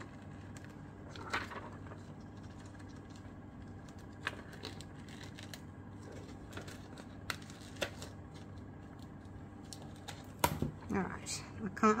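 A few sparse snips of scissors through a printed sticker sheet, with light rustling as the cut-out is handled, over a faint steady hum; the handling grows louder near the end.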